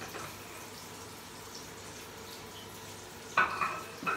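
Salmon fillet frying in a pan on a gas stove, a steady faint sizzle. Near the end comes a brief, loud ringing knock, like dishware being set down.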